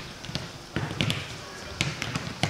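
Footballs being kicked in a passing drill: several sharp thuds of boot on ball, about three in two seconds.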